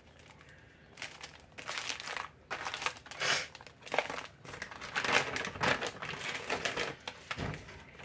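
Packaging crinkling and rustling in irregular bursts as it is handled. It begins about a second in.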